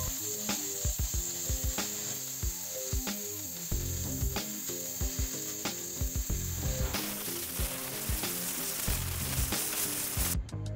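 Oxy-fuel cutting torch hissing as it cuts through rusty steel plate, the hiss turning broader and fuller about seven seconds in. Background music with a steady drum beat plays over it.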